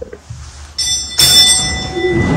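A bell struck once, a little under a second in, its several clear high tones ringing on. Just after it comes a loud, brief burst of noise, followed by a steady rustling haze.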